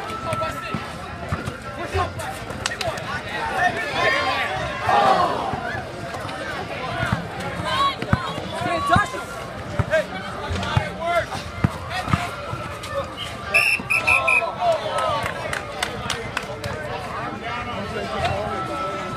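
A basketball bouncing on an asphalt court, scattered knocks under the chatter and shouts of a crowd of onlookers and players. A short high-pitched tone sounds about two-thirds of the way through.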